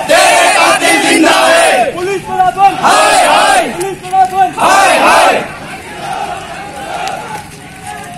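A crowd of men shouting protest slogans together in four loud bursts over the first five seconds, then quieter crowd noise.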